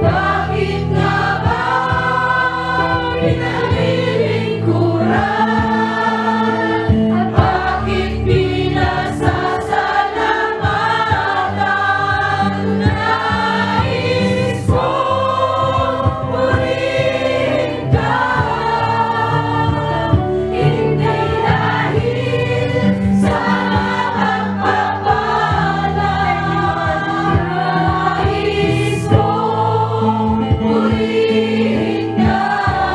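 Worship song: a choir singing over instrumental accompaniment with steady, held bass notes.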